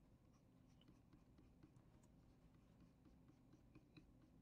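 Near silence, broken by faint small ticks and light scratching of a pen stylus making strokes on a drawing tablet.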